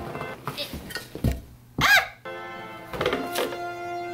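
Background music with sustained tones, over which a thunk sounds a little over a second in. About halfway comes a brief, loud sound that swoops in pitch, and a few short handling sounds follow near the end.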